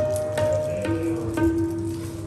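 Harmoniums and tabla playing kirtan: held harmonium notes that step down to a lower long note about a second in, over tabla strokes about twice a second, growing quieter near the end.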